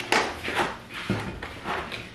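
Cardboard packaging rustling and scraping as a pan is lifted out of its box: a quick run of short rustles, with a dull thump about a second in.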